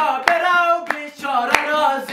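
A man singing a Hazaragi folk song to his own dambura, with sharp hand claps on the beat about every 0.6 s.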